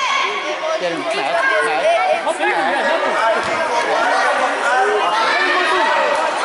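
Many overlapping voices calling and chattering at once, largely high-pitched children's voices, echoing in a large indoor hall.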